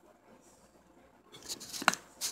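Handling noise from the phone that is recording: quiet room tone, then near the end a brief rustle that ends in one sharp click.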